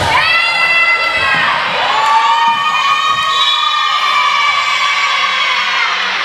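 Group of girls' voices cheering and yelling in the gym, in long high-pitched held calls: three drawn-out yells, the last lasting about three seconds.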